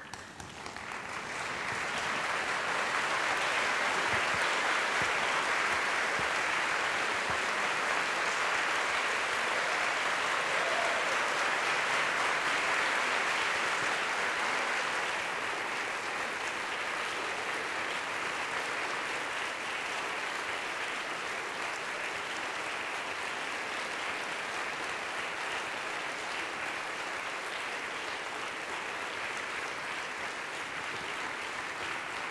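Large audience applauding continuously, swelling over the first two seconds and easing a little about halfway through.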